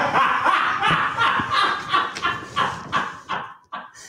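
A woman laughing hard in a run of breathy bursts, a few a second, that weaken and trail off near the end.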